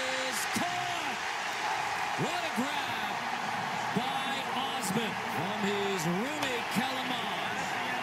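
Large stadium crowd cheering, with single voices yelling out over the steady crowd noise.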